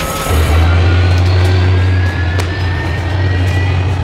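Dramatic television sound design: a deep, steady drone with thin high tones slowly rising above it, and a sharp click about two and a half seconds in.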